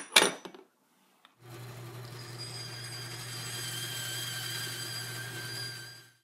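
HiTorque 5100 mini lathe running at a steady speed: a low motor hum with a high, slightly wavering whine, starting about a second and a half in and fading away at the end.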